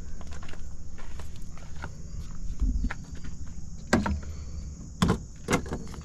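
Footsteps on gravel over a steady low rumble, with three sharp clicks or knocks about four, five and five and a half seconds in.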